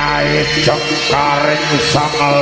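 Javanese jaranan music for the Singo Barong dance, edited with heavy reverb: a melody sliding up and down in pitch over steady held tones.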